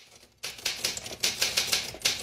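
Manual typewriter typing: a rapid, even run of key strikes that begins about half a second in.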